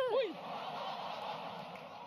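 A woman's shouted call ends, then a studio audience reacts with a steady crowd noise that slowly fades.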